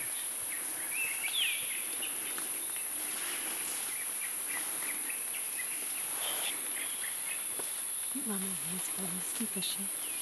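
Rainforest ambience: a steady high-pitched drone of insects with scattered short bird chirps, one clear rising-and-falling chirp about a second in. A low voice-like murmur comes in briefly near the end.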